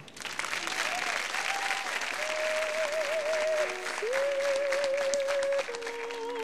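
Studio audience applauding. An opera aria's music begins under the applause, with long held notes with vibrato from about two seconds in.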